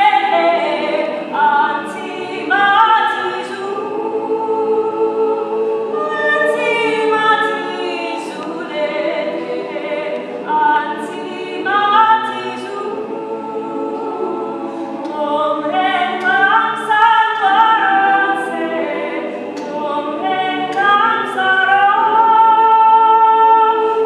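A mixed choir singing a traditional Nama song a cappella in close harmony, with a female soloist's voice out in front, phrases rising and falling every second or two.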